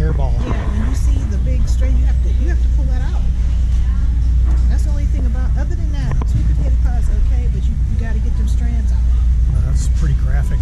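Indistinct people talking, over a steady low rumble.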